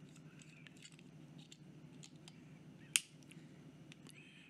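Quiet handling of a metal fountain pen with faint small ticks, then one sharp click about three seconds in: the snap cap, which also has threads, being pushed onto the pen.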